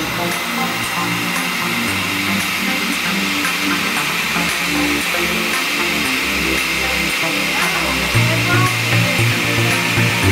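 Countertop blender motor running steadily throughout, with background music and a changing bass line underneath.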